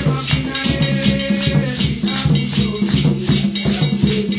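Hand drums played in a steady rhythm, with a shaker-like rattle marking quick, even strokes over the drumming.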